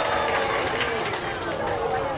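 Crowd voices: many people talking and calling out at once, overlapping.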